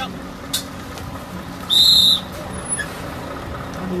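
A referee's whistle blown once, a single high, loud blast of about half a second near the middle, as the signal for a truck-pull attempt. A steady low hum runs underneath.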